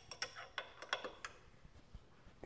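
Light, irregular clicks and taps of hands working a small grinding wheel on the spindle of a tool and cutter grinder, turning and nudging it by hand to get it running close to true. A quick run of clicks in the first second or so, then only a few faint ticks.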